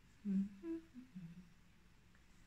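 A woman humming a short wordless tune of about four notes, rising and then falling, through closed lips. It starts about a quarter second in and stops after about a second.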